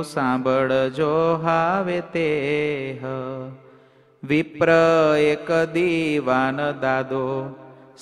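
A man's voice chanting Gujarati devotional verses in a slow, melodic recitation with long held notes, breaking off for a brief pause about four seconds in.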